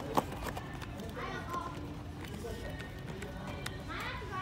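Store background of distant voices and faint music, with one sharp click just after the start.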